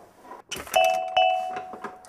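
Electronic doorbell chiming, two struck notes less than half a second apart that ring on and fade out over about a second.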